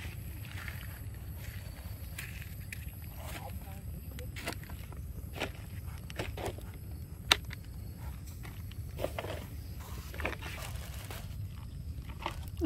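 Cooking utensils being handled: light scattered clicks and scrapes of a metal spatula in a wok and a knife peeling an eggplant, with one sharper click about seven seconds in, over a low steady rumble.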